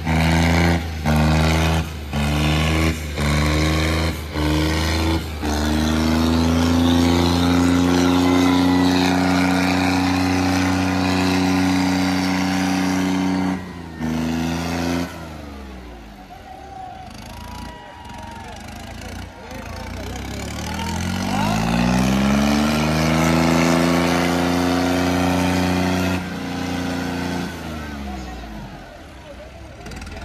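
John Deere tractor diesel engine at high revs under heavy pulling load. It cuts out briefly several times in the first few seconds, then runs steadily at high revs. Later it revs up again, rising in pitch, holds, and drops back near the end.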